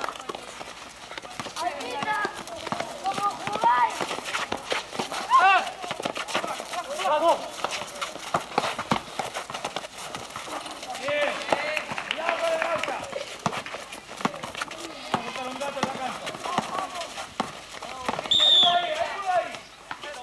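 Basketball pickup play: the ball bounces and shoes strike the hard court in many short knocks, while players shout and call to each other. A loud, high-pitched shout comes near the end.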